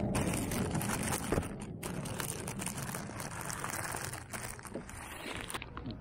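Thin plastic bag crinkling and rustling while being handled around a boxed camera, a run of many small crackles.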